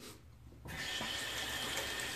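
Tap water running into a bathroom sink, turned on about two-thirds of a second in and then flowing steadily.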